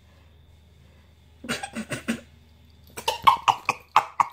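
Coughing in two runs of short hacks: four about a second and a half in, then a quicker, louder run near the end.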